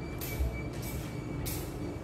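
A paper tissue rustling and crinkling in the hands in three short bursts, over a steady low room hum.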